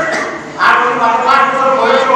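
A man speaking loudly into a microphone, with a brief lull about half a second in before his voice resumes.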